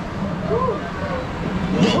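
Rocky Mountain Construction single-rail coaster train rolling slowly into the station: a low, steady rumble, with a few faint indistinct voices about half a second in.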